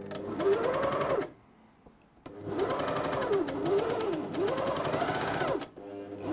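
Britannia CS4000+ three-needle coverstitch machine sewing ribbed knit fabric in two runs with a pause of about a second between them, its motor pitch rising and falling as the speed changes.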